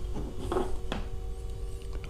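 Steady electrical hum made of a few fixed tones, with faint handling sounds and a single sharp click about a second in.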